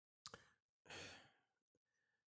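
Near silence, with a man's faint sigh, a breath out, about a second in.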